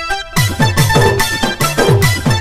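Casio SA-41 mini keyboard playing a song melody; after a few short notes, a fast electronic beat with low, falling-pitch drum sounds kicks in about a third of a second in.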